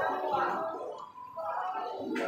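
Indistinct background voices with music playing, the general din of a fast-food restaurant; no one speaks clearly.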